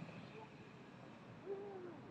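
Quiet outdoor background hum with one short, low hooting call about one and a half seconds in, falling slightly in pitch.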